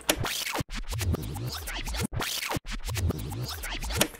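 Short electronic music cue with turntable-style record scratching over a low bass, cutting out suddenly for an instant three times.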